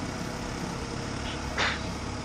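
1988 GMC Sonoma's 2.5-litre four-cylinder throttle-body-injected engine idling steadily during a base ignition timing check. There is a brief short noise about one and a half seconds in.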